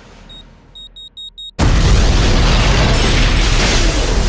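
A bomb's electronic beeper sounds one short high beep, then four in quick succession. About a second and a half in, a sudden loud explosion goes off and keeps sounding as the blast and debris carry on.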